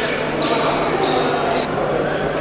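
Voices and chatter echoing in a large sports hall, with a few sharp thuds: one near the start, one about half a second in, and one near the end.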